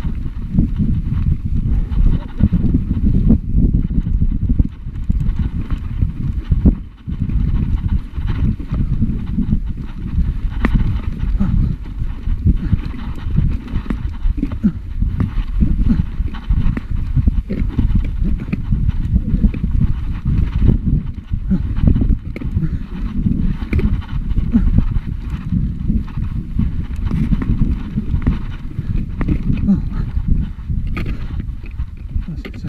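Mountain bike clattering over a rough stone track: a dense, irregular run of low knocks and rumble from the tyres striking rock and the bike shaking over it, with a brief let-up about seven seconds in.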